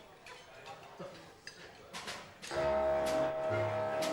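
A few light ticks, then about two and a half seconds in a swing big band comes in loudly, its horn section holding a full chord.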